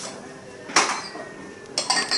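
Dishes and cutlery clattering and clinking: one sharp clatter about three-quarters of a second in, then a quick run of ringing clinks near the end.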